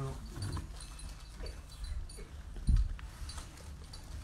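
Quiet room tone with faint murmured voices and one dull low thump nearly three seconds in.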